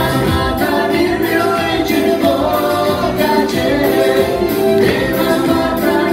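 Live band playing a pop song: a male lead singer over electric guitar, acoustic guitar and keyboard, with a steady drum and cymbal beat.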